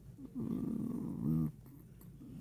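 A man's drawn-out breathy vocal sound, a sigh or throaty exhale lasting about a second, ending in a brief low voiced murmur.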